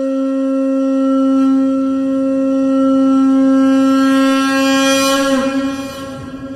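A conch shell (shankha) blown in one long, steady note. It grows brighter and wavers down in pitch about five seconds in as the blow breaks off.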